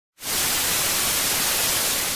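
Analogue TV static hiss, as from a detuned television, switching on abruptly a fraction of a second in and holding steady.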